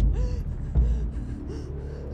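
A person's gasping breaths with faint short whimpers, over a steady low rumble.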